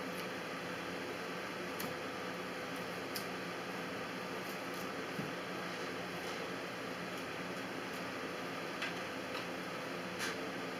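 Steady background hiss with a few faint, scattered clicks of a knife against a cutting board as it cuts the skin off a prickly pear cactus pad.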